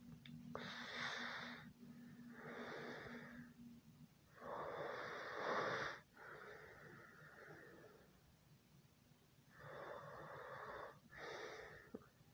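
Breathing: three slow breaths, each an in-breath followed by an out-breath, the middle breath loudest and a pause of about two seconds before the last.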